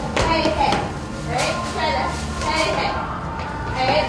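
Girls' and young women's voices talking and calling out, with a few sharp claps mixed in.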